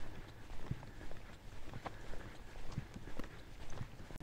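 Footsteps of a person walking at a steady pace outdoors, short knocks about two a second over a steady low rumble.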